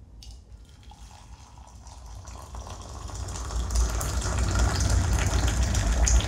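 Water poured from a metal kettle into a ceramic mug, a steady splashing stream that grows louder through the pour.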